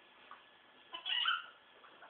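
A ferret gives one short, high squeak about a second in, a sign that the play-fighting has got too rough.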